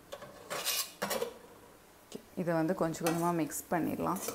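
A metal spatula scrapes and clinks against a metal kadai in two short bursts in the first second or so, scooping out stir-fried vegetables; a voice follows in the second half.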